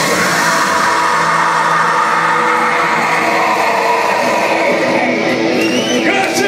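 Metal band playing live in a club: distorted guitars, drums and two male vocalists singing and yelling, on a long sustained passage with held notes, loud and steady throughout.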